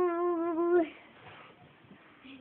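A child's voice holding one long, slightly wavering note that cuts off about a second in, followed by faint room sound.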